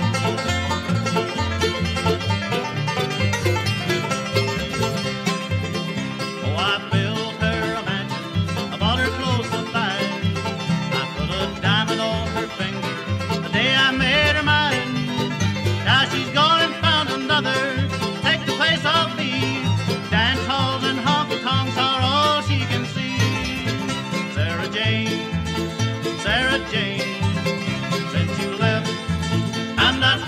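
Bluegrass band playing an instrumental break with no singing: banjo, guitar, fiddle, mandolin and bass, with quick sliding notes running through most of the break.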